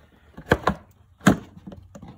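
Plastic air filter housing lid knocking against the air box as it is worked onto its locating tabs: two sharp clicks close together about half a second in, then a louder knock a little over a second in.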